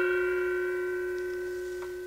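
A meditation bell struck once, ringing with a strong low tone and several higher overtones that fade slowly; some of the higher overtones die away near the end. It closes a period of silent meditation.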